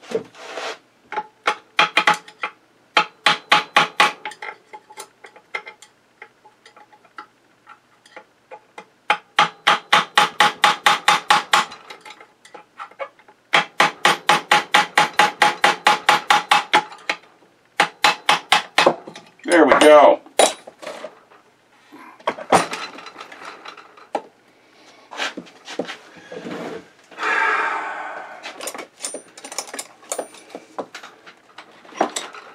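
Hammer tapping a punch set in a vintage sewing machine head, trying to drive out a part that has been oiled and heated to free it, in three runs of about seven quick, ringing taps a second. A man's voice briefly exclaims about two-thirds of the way in, and is heard again near the end.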